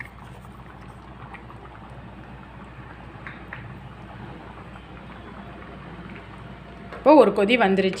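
Coconut-based black chickpea curry simmering in a steel pot, with a soft, steady bubbling. A woman starts talking about a second before the end.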